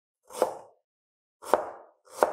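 Cleaver slicing through a vegetable onto a plastic cutting board: two separate chops about a second apart, each a sharp knock with a short crunch.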